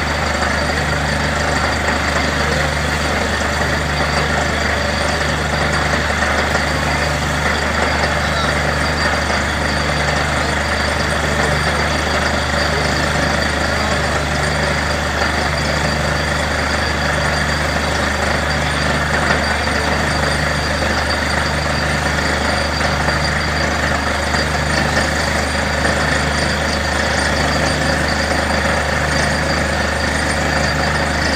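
Borewell drilling rig running steadily, its engine and machinery droning with a low pulse about once a second, over the rush of water and mud blowing out of the bore.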